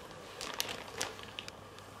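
Plastic mailing bag crinkling faintly as it is handled, in a few short, scattered crackles.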